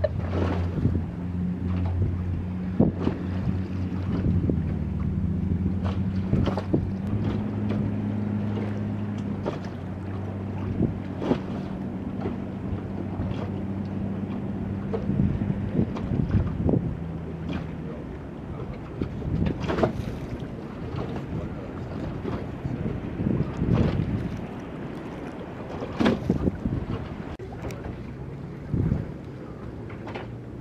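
A boat engine drones steadily at a low pitch, with wind buffeting the microphone and water slapping. A little past halfway the engine hum drops away, leaving wind gusts and splashes.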